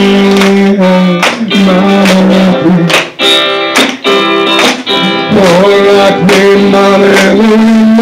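Live band music led by guitar, played loud, with long held notes over a steady beat.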